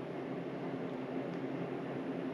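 Room tone: a steady, faint background hiss with a low hum, and no distinct sounds.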